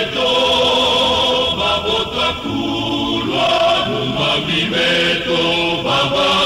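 Male choir singing a gospel song in the Congolese style, voices holding long notes together that shift in pitch every second or so.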